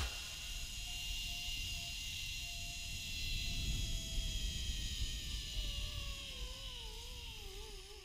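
Zipline trolley pulleys running along the steel cable, a whine that falls in pitch over the last few seconds as the rider slows into the landing. Under it is a steady rumble of wind on the microphone.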